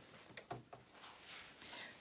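Near silence with faint handling noises: a couple of soft clicks about half a second in, then a brief soft rustle of cotton fabric being laid out.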